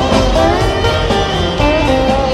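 Live rock band playing, led by an electric guitar solo whose notes glide up and down in pitch, over bass and drums.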